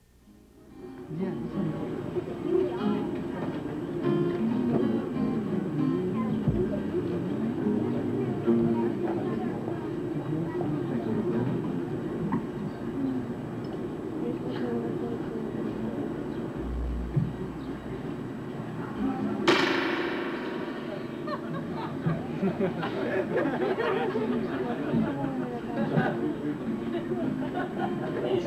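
Indistinct talking over an acoustic guitar being played, with one sharp knock about twenty seconds in.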